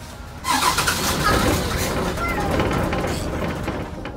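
A stalled bus engine being cranked to restart it. The loud mechanical noise starts suddenly about half a second in, runs for about three seconds, then drops away.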